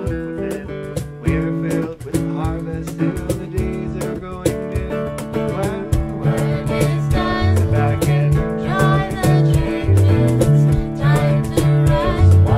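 Live band music: electric guitars strumming a steady beat, with a woman singing in the second half.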